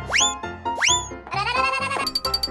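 Cartoon sound effects over upbeat children's background music: two quick rising whistle-like swoops, then a longer wavering pitched cry that rises and levels off near the end.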